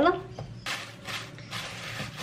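A thin plastic bag crinkling and rustling in a run of crackly bursts from about half a second in, as it is spread and tucked over a bowl of bread dough to cover it.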